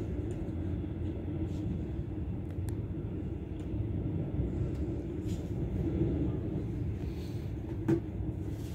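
Steady low rumble of a moving passenger train, heard from inside the carriage. A few faint ticks come through, and one sharp click just before the end is the loudest moment.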